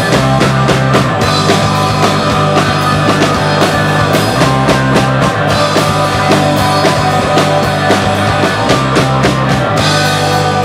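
Live rock band playing an instrumental passage, loud and steady: drum kit keeping a regular beat under bass guitar, acoustic guitar and electric guitar.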